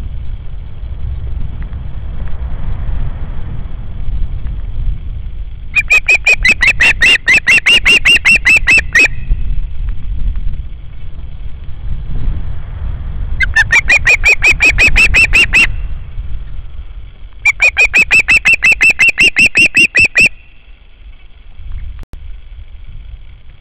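Osprey calling: three runs of rapid, high, whistled notes at about five a second, each run lasting two to three seconds, over a steady low rumble.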